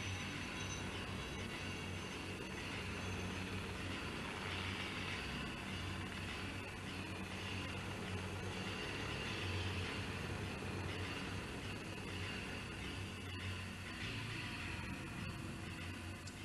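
Helicopter hovering overhead with a steady rotor and engine noise and a low rumble that swells and fades slightly.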